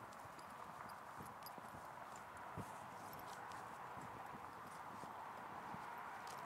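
Quiet, with a steady faint hiss and a few light clicks and one soft knock about two and a half seconds in, from a standing horse and the halter and lead rope being handled on it.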